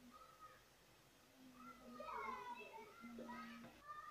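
Faint voices in the background, rising and falling, starting about a third of the way in.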